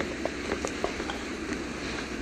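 Quiet outdoor background with a steady low noise and a few faint, irregular light clicks and rustles.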